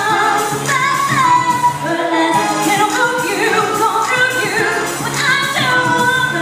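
Female pop vocal group singing live into microphones over amplified pop backing music.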